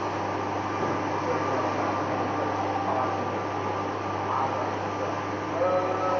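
Steady machine whir and low hum of a large-format hybrid UV printer running while it prints, with faint voices in the background and a voice starting near the end.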